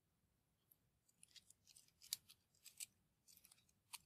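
Wooden matchsticks clicking and rubbing against each other as a bundle is handled between the fingers: a quiet run of light, sharp clicks and small scratches from about a second in.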